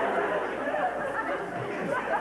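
Indistinct voices with no clear words, a speech-like murmur of chatter.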